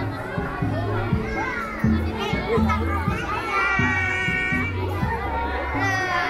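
Music with a heavy bass line moving note to note, under the chatter and calls of a crowd that includes children's voices.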